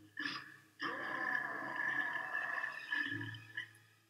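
A zombie's throaty cry from a horror film soundtrack: a short burst, then a longer held cry of about two seconds that fades, leaving a low hum near the end.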